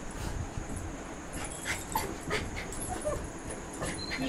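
Small dogs playing on a bed: a few short, faint whimpers and yips among the scuffling of paws and bodies on the bedding.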